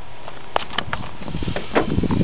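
Cardboard box and plastic-wrapped rifle being handled at close range: a few scattered clicks, then busier knocking and rustling in the second half.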